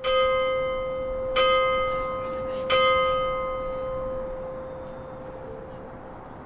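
A single church bell struck three times at an even pace, a little under a second and a half apart. Each stroke rings one clear note that hangs on and slowly dies away after the last strike.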